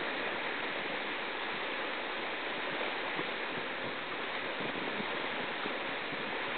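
Steady rushing of the fast, turbulent whitewater of the glacial Lillooet River, an even hiss-like rush with no breaks.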